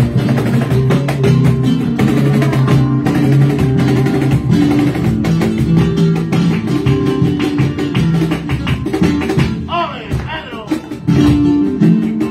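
Live flamenco: a Spanish guitar played with cajón beats and rhythmic handclaps (palmas), dense sharp strikes over the guitar's notes. About ten seconds in, a voice calls out with a wavering, rising pitch.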